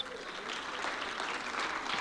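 Audience applauding, an even spread of clapping that grows slightly louder.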